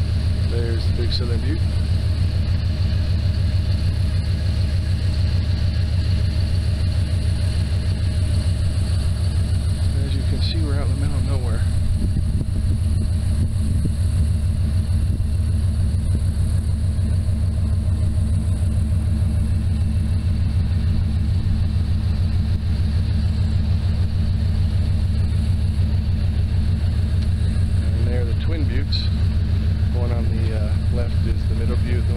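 Steady low rumble of a vehicle driving along a dirt road, heard from on board, with no change in pace.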